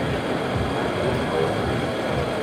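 Mahlkönig espresso grinder running steadily as it grinds coffee into a portafilter held under its spout.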